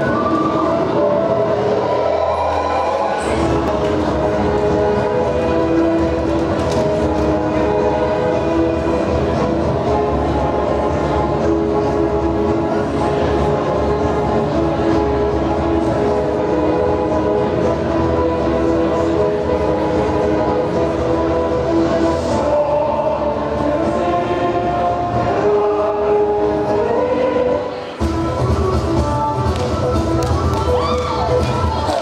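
Music track played through a hall's sound system for a stage performance: held, layered tones, with low notes coming in about three seconds in. The music dips briefly near the end, then a new, heavier section begins.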